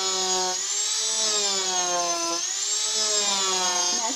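Handheld rotary tool spinning a Kutzall carbide burr against a wooden block: a steady motor whine with a rasp from the cutting, its pitch dipping and recovering a few times as the burr is worked across the wood with very little pressure.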